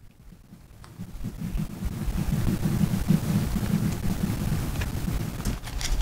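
Low rumbling noise on the microphone, like wind or rubbing on it, swelling over the first two seconds and then holding steady.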